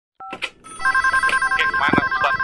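Electronic telephone ringing: a rapidly warbling two-tone ring that starts just under a second in, after a few short keypad-like beeps. A brief voice is heard just before the end.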